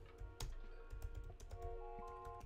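Computer keyboard keys clicking as someone types, a run of quick, irregular keystrokes, with soft background music underneath.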